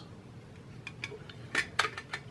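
Light metallic clicks and clinks from a thin tin-plated steel Altoids tin and the circuit board fitted inside it as they are handled. A handful of short ticks, the sharpest in the second half.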